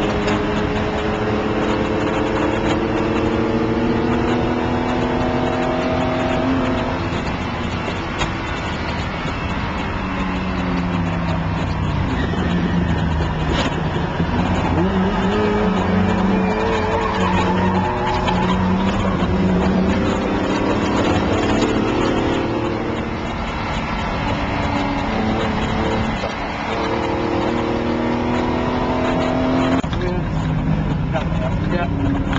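Classic race car's engine heard loud from inside the open cockpit on track, its pitch falling as the driver lifts and brakes for corners, then climbing again under acceleration, twice over.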